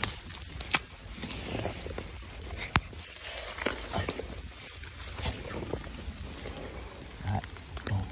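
A hand digging and groping in the wet mud of an eel burrow, with scattered short clicks and knocks.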